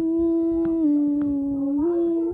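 A person humming a long, loud held note that steps down a little in pitch about a second in and rises again near the end.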